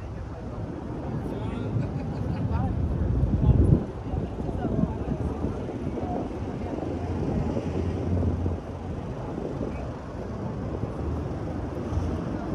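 Busy city street sound: people talking nearby over a steady bed of traffic noise, with a loud low rumble about three and a half seconds in.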